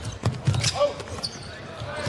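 A basketball bouncing on a hardwood court several times in the first second, with a short snatch of a commentator's voice.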